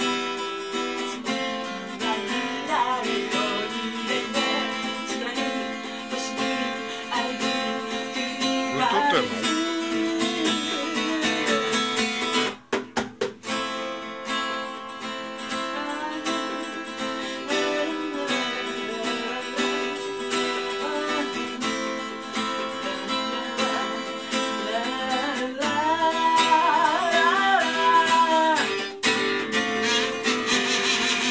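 Acoustic guitar strummed and picked while a harmonica played from a neck rack carries the melody in an instrumental passage. The sound cuts out in several quick gaps about halfway through.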